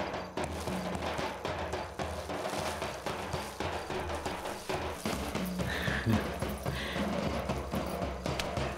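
Background film score: a steady, evenly paced drum pattern over low held notes.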